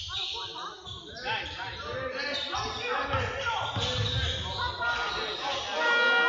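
A basketball dribbled on a wooden sports-hall floor during play, with players and coaches shouting. The hall's echo carries the sound.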